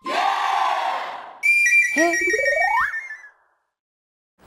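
Comedy sound effects: a short noisy whoosh that fades, then a high steady whistle tone with a rising slide-whistle glide beneath it. The effects cut off suddenly about three and a half seconds in.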